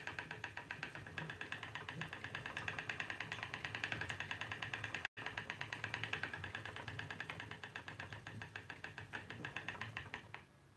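Wooden spinning wheel turning steadily as flax is spun, with a fast, even ticking.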